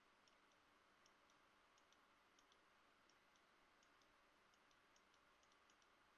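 Near silence: faint hiss with many faint, irregular clicks, about three a second and often in pairs, from computer input while painting with a digital brush tool.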